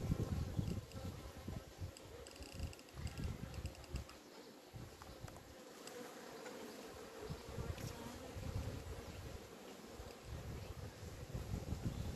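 Honeybees buzzing steadily over an open hive. Irregular low knocks and rustles come from the wooden frames being handled and slid along the hive box, louder near the start and the end.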